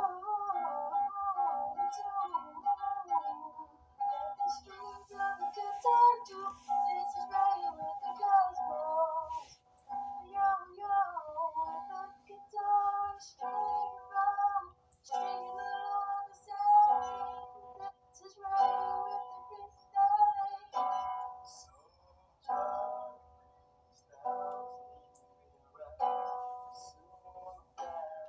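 A man singing melodic phrases while playing an acoustic guitar. In the second half the guitar chords are struck about every two seconds, each one ringing out before the next.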